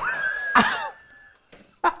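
A person laughing in a high, held squeal for under a second, followed by a short pause and a sharp burst of breath or voice near the end.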